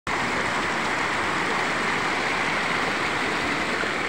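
Muddy floodwater rushing in a fast, churning torrent: a steady, even rush of water.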